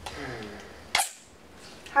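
A single short, sharp click about a second in, after a faint murmur of a voice at the start.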